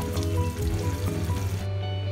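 Background music with steady held notes over the hiss of potato curry simmering in its pan. The hiss cuts off shortly before the end.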